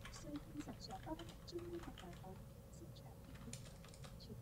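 Faint studio room sound: scattered soft clicks like typing on a computer keyboard over a low hum and a faint steady tone, with faint distant voices.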